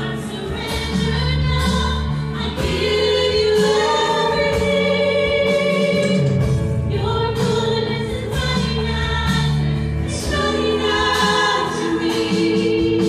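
Live worship band playing a song: several voices singing together over acoustic guitar, bass guitar and drums with a steady beat.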